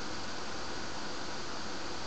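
Steady background hiss of the recording with a faint thin high whine running through it. No clicks, collision beeps or other events stand out.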